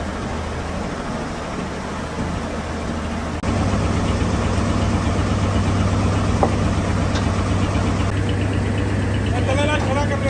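An engine idling with a steady low hum, which steps up louder about three and a half seconds in. There is a single sharp click a little past the middle, and a short voice-like sound near the end.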